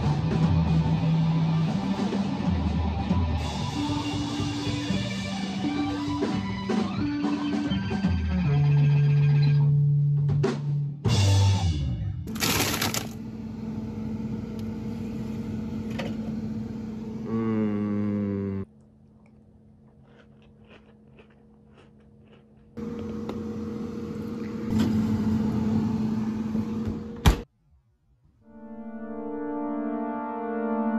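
A band playing in a small room: guitar and drums with notes stepping up and down. The sound then cuts abruptly several times between short clips, with a sharp click just before the end, and sustained synthesizer chords begin in the last second or two.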